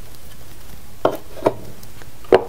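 Two short, light knocks about half a second apart, from objects being handled on the workbench.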